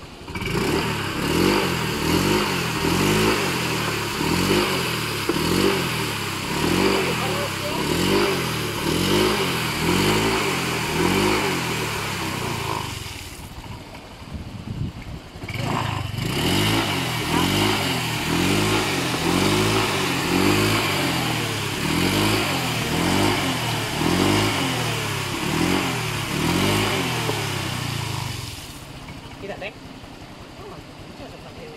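Honda Click 125 scooter's single-cylinder engine revved up and down over and over, about three revs every two seconds, its rear wheel spinning in shallow river water and throwing spray. The revving breaks off for a couple of seconds midway and dies away near the end.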